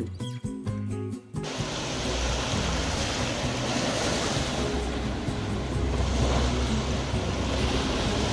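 Background music, then from about a second and a half in, surf washing onto a sandy beach: a steady rush of water, with the music carrying on faintly underneath.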